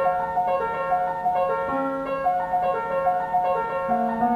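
Piano played from a Hupfeld paper music roll on a Phonola player mechanism: a quick, repeating figure of notes in the upper-middle register, with a lower note entering a little before the middle.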